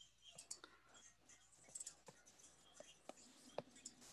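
Near silence: room tone over an online meeting call, with a handful of faint, scattered clicks.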